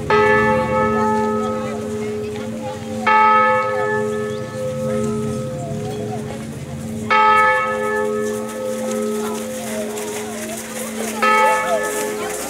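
A single church bell tolling: four strikes roughly three to four seconds apart, each left to ring on so that its low hum carries under the next strike.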